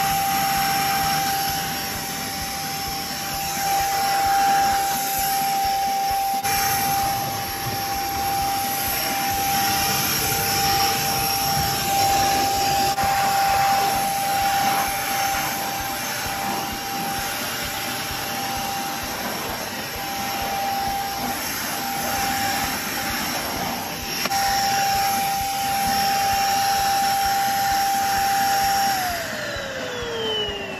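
Corded Beldray bagless vacuum cleaner running, with a steady high motor whine over the rush of air. Near the end it is switched off and the whine falls away as the motor winds down.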